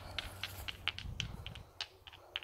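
Dry leaf crackling as it is handled and crumpled in the hands to test whether it is dry: a quick, irregular string of short, sharp ticks.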